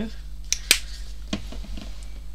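Two sharp plastic clicks close together, the second the loudest, then a softer knock a little later: a paint bottle's flip-top cap snapped shut and the bottle set down on the craft mat.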